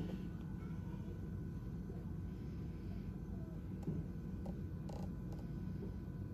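Quiet, steady background hum with a few faint clicks and handling noises from a handheld inspection camera being held and moved, around four to five seconds in.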